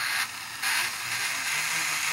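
Twin electric flywheel motors in a Nerf blaster's flywheel cage switch on abruptly and run with a steady whir, dipping briefly about half a second in before running on.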